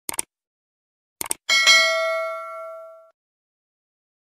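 Subscribe-button animation sound effect: a quick double mouse click, another double click about a second later, then a notification-bell ding that rings out and fades over about a second and a half.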